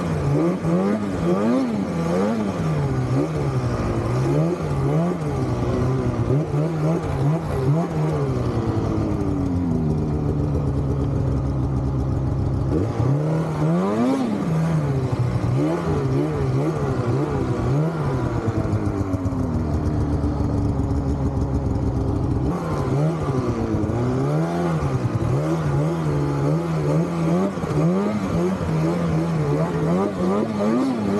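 Snowmobile engine running under way, revving up and down again and again as the throttle is worked, with two stretches of steady held throttle, about ten seconds in and about twenty seconds in.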